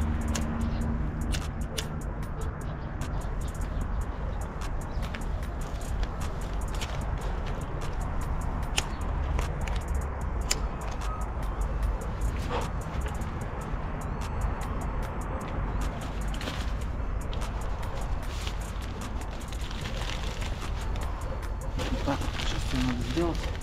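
Wind rumbling on the microphone, with scattered sharp clicks from a handheld lighter being struck and worked against a giant newspaper-rolled cigarette.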